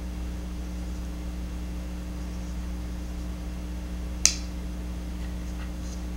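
A single sharp click about four seconds in from the Boker Gamma folding knife being handled while its liner lock is checked for blade play, over a steady low electrical hum.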